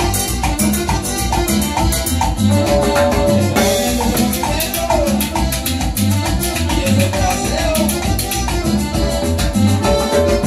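A small band playing live instrumental Latin dance music. An electronic keyboard carries the melody over timbales and cymbal, with a steady, driving beat.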